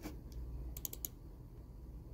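Faint light clicks, with a quick run of three or four about a second in, over a low steady hum.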